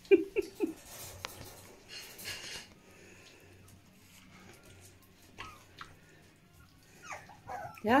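Puppies eating soft mash from steel bowls, with quiet wet lapping and smacking. A few short, loud vocal sounds come right at the start.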